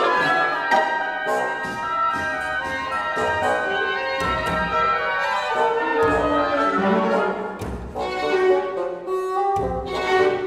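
Chamber orchestra playing: strings, oboes, horns, bassoon and harpsichord together, with many changing notes over low bass notes.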